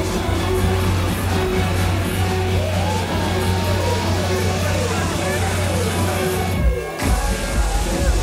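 A live band playing dance music with a steady bass line and vocals, with a run of repeated falling sliding notes in the middle. The music drops out briefly about seven seconds in, then comes back.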